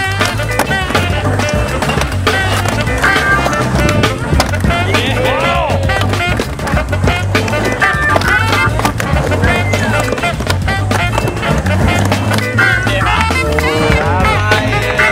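Skateboard wheels rolling and clacking on concrete ramps, with sharp knocks of the board, over background music with a steady bass beat.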